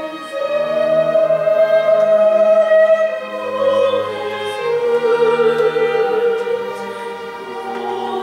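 A woman singing solo in operatic style, accompanied by a string orchestra, in a slow lullaby. She comes in about a third of a second in and holds long notes with vibrato, each a little lower than the one before.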